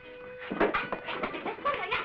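Wordless human cries in quick succession, squeals and yelps with sliding pitch, starting about half a second in, from people scuffling. A held musical note fades out as the cries begin.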